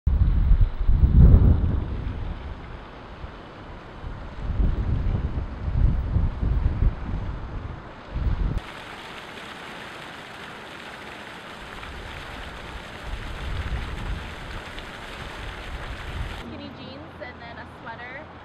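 Gusty wind buffeting the microphone for about the first eight seconds. Then, after a sudden cut, steady splashing of a fountain's water jet, with faint voices near the end.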